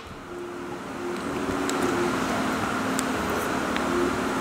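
Steady background hum that swells over the first two seconds and then holds, with a few light clicks of a metal spoon and fork in a food bowl.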